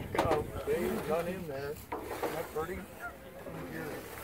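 People's voices talking, the words indistinct.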